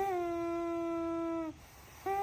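A baby with a tracheostomy vocalizing, one long, steady, sung-out "aah" that dips slightly at the start and stops about a second and a half in.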